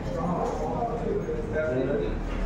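People talking: voices of the players and onlookers around the table, with no clear ball strikes.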